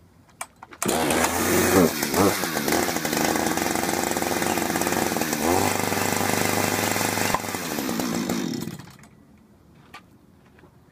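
A Husqvarna two-stroke chainsaw comes in suddenly about a second in and runs hard, revved up and down a couple of times. It drops back near the end and dies away.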